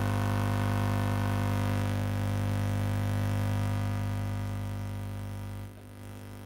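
Steady electrical buzz-hum through the hall's sound system, a low hum with a buzzy edge. It cuts in suddenly, holds level, eases slightly and then drops away near the end.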